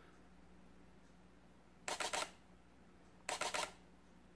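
Sony A77 II's shutter firing two short, rapid continuous-high bursts, each about half a second of quick clicks, about a second and a half apart.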